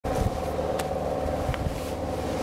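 Steady motor drone holding a few even tones, with a couple of faint clicks.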